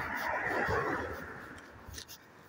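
A car passing close by on the street: its tyre and road noise swells in the first second and then fades away.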